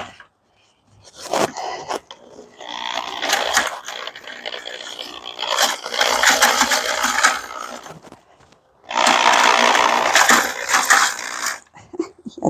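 Corded drill spinning a mixing paddle through a small batch of concrete in a plastic bucket, the gritty mix churning. It starts with a short burst about a second in, then runs in two long spells with a brief stop between them, the second cutting off near the end.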